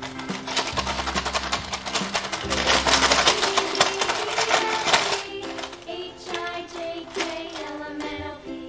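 Children's background music, with a dense rattling clatter for a few seconds in the middle as a cloth drawstring pouch with small objects inside is shaken.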